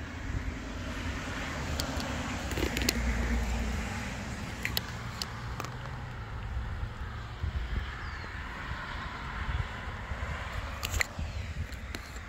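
Gas-powered skateboard riding along an asphalt path: a steady low rumble of its small engine and wheels on the pavement, with wind on the microphone and a few sharp clicks.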